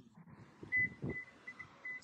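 A quick run of faint, high beeps at one steady pitch, broken into short pieces, with a dull thump about a second in.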